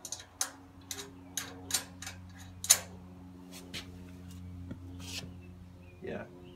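Irregular sharp metallic clicks and clinks as nuts and washers are put on and snugged down onto bolts of a steel mobile machine base, about ten over the stretch, the loudest a little under halfway.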